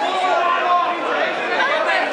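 Crowd chatter: many voices talking and calling out at once around a boxing ring.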